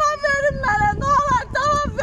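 A woman's high-pitched wailing in grief, a sung lament of long held cries that bend in pitch and break every half second or so.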